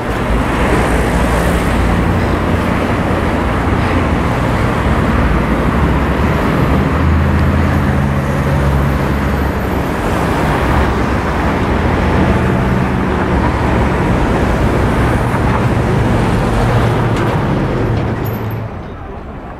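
Steady road traffic: a continuous rush of passing vehicles, with the low hum of engines swelling and fading. It starts abruptly and cuts off near the end.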